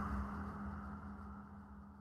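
The fading tail of a logo-animation intro sting: a held low note over a low rumble, dying away steadily.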